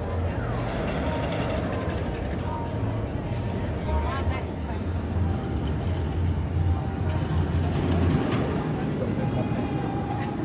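B&M hypercoaster train rumbling along its steel track in a steady low roar, over a background of voices and music. The rumble cuts off abruptly near the end.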